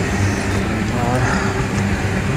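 Motorcycle engine running at a steady pitch while riding, with a voice over it.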